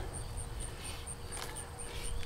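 An insect chirping in a high, even pulse about four times a second, over a low outdoor rumble. A brief faint rustle comes about one and a half seconds in.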